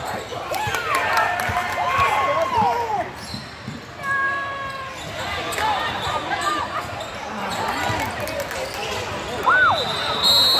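A basketball bouncing on a hardwood gym floor during live play, with short squeaks from players' shoes, heard in the echo of a large gym.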